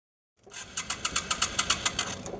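Motorcycle engine: after a moment of silence, a rapid, even train of pulses, about seven a second, growing louder, dropping to a steadier, lower sound right at the end.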